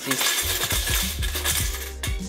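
Pennies rattling hard inside an aluminium drink can shaken by a 12-volt motor: a dense metallic clatter that lasts about two seconds and stops abruptly. The relay is holding the motor on for a full second, which makes the shaking too violent.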